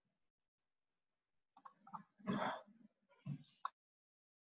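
Silence, then from about a second and a half in a few sharp clicks and short bursts of rustling noise, the loudest near the middle, ending with a click.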